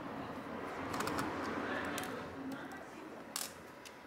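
Faint scraping and light clicks of a small screwdriver working the screws that hold a laptop's battery, with one sharper click about three and a half seconds in.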